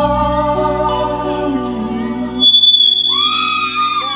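Live band music through a PA: electric guitars and bass hold long sustained notes while a male singer sings, with the chord changing and a new high note entering a little past halfway.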